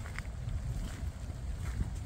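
Wind rumbling on the microphone, with a few faint footsteps.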